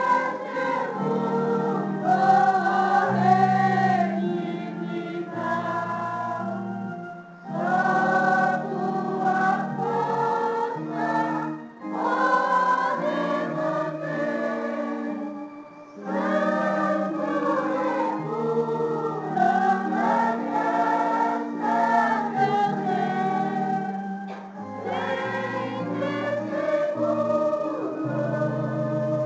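A choir sings a hymn in several-part harmony, in held phrases of about four seconds with short breaks between them.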